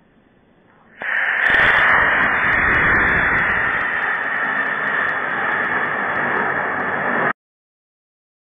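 Estes model rocket motor igniting and launching: a sudden loud, steady rushing hiss starting about a second in, which stops abruptly about seven seconds in.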